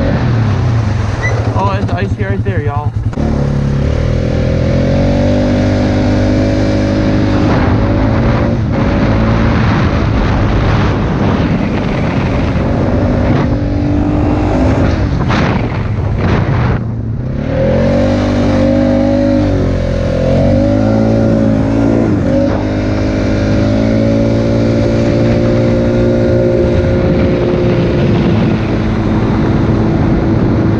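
Polaris Sportsman ATV engine running while riding, its pitch rising and falling as the throttle opens and closes. About sixteen seconds in there is a short drop off the throttle before it picks up again.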